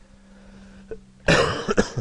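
A man coughs, a double cough a little over a second in, over a faint steady hum.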